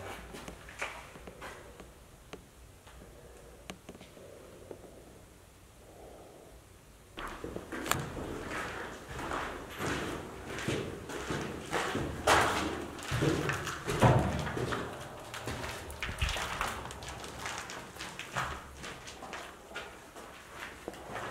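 Footsteps on a floor littered with paint chips and debris: a quieter stretch with a few small clicks, then from about seven seconds in a run of irregular scraping, crunching steps.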